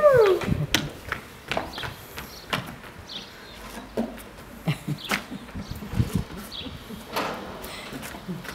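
Empty plastic water bottles knocked and skidding about on a tiled floor as a small child kicks them, heard as scattered hollow knocks a second or so apart. A child's brief falling cry opens it.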